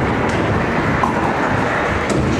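Nine-pin bowling ball rolling along a wooden alley lane, a steady rumble.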